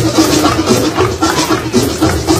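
Live rumba catalana played on two acoustic guitars with a brisk, percussive rumba strum, backed by hand drums, with no singing.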